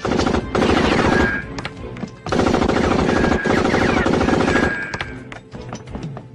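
Rapid, continuous movie gunfire in two long bursts: the first runs about a second, the second about two and a half seconds from just past the two-second mark, with a dramatic film score underneath.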